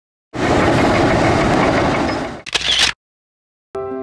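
About two seconds of loud, even noise that stops abruptly, then a second short burst of noise and silence. Near the end, gentle background music with sustained notes begins.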